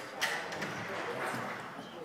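Indistinct voices murmuring in a large echoing hall, with a single sharp knock about a quarter of a second in.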